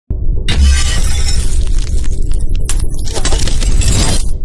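Logo intro sting: loud music with a deep bass hit at the start and a crashing, shattering sound effect about half a second in, ringing on as the logo animates.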